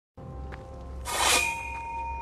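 A single metallic clang about a second in, ringing on afterwards as a steady high tone, over a low rumble.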